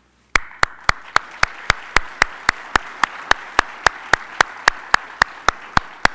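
Audience applauding. A single clapper stands out loud and steady above the crowd at nearly four claps a second, starting about a third of a second in.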